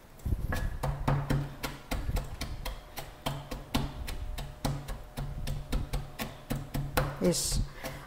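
Pestle pounding almonds, hazelnuts, garlic, parsley and biscuit in a glazed ceramic mortar to make a Catalan picada: a steady run of sharp knocks with dull thuds, about three a second.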